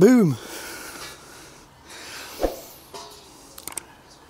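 A short voiced call from a person, its pitch rising and then falling, then quiet with a single sharp knock about halfway through and a few small clicks near the end.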